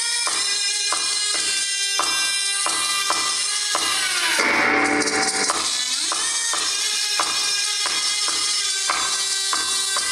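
Live band music with a steady rhythm of notes about three a second. A little before the middle the pattern gives way to a sustained, swelling chord, then the rhythm comes back.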